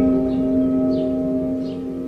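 Ambient meditation music: a deep bell-like tone, struck just before the start, rings on and slowly fades, over a bed of soft, held tones and light bird chirps.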